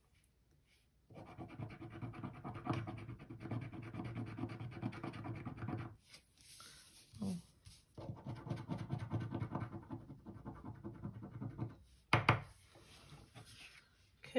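A coin scraping the coating off the scratch-off circles of a paper scratcher card in quick strokes. It comes in two long bouts with a pause between them, and a short knock follows near the end.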